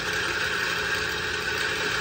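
Steady mechanical drone of a running machine, even and unbroken, with a few steady high tones in it.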